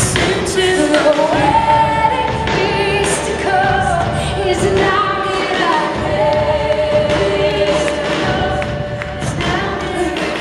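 Live worship music: a hymn sung by worship leaders with a band, with drum hits under held, sung lines and the congregation singing along.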